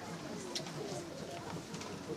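Faint low-pitched bird calls over quiet background hiss.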